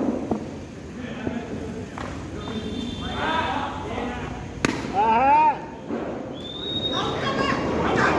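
A single sharp crack of a cricket bat striking the ball about halfway through, followed at once by players shouting.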